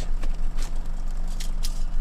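Boat outboard motor running steadily at trolling speed, a low even hum, with a few light clicks from fishing tackle being handled.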